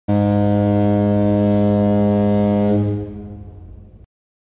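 A ship's horn sounding one steady, deep blast that starts abruptly, holds for nearly three seconds, then dies away.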